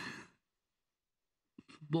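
Speech only: a woman's drawn-out hesitation 'ee' trails off, then about a second and a half of silence before speech starts again near the end.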